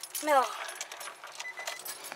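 A voice says "No", followed by a scatter of light clicks and small rattles from handling inside the car.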